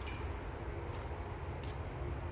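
Steady low rumble of outdoor background noise, with two faint clicks about a second in and near the end.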